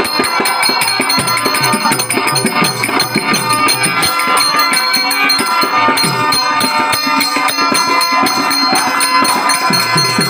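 Live traditional Indian folk-theatre music for a dance, with a fast, steady rhythm throughout. A hand drum beats strokes whose low notes slide downward in pitch. Held organ-like notes sustain over it, and a continuous metallic jingle comes from bells or small cymbals.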